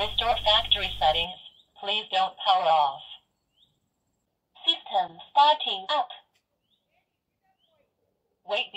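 Recorded voice prompts from the iCSee Wi-Fi camera's small built-in speaker, three short phrases with pauses between, thin and telephone-like, as the camera enters pairing mode after its button is pressed.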